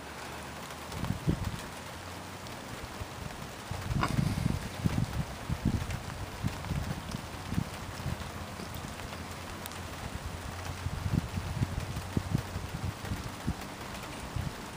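Irregular low rumbling and bumping of wind buffeting and handling noise on a phone microphone, over a faint steady hiss, with a single click about four seconds in.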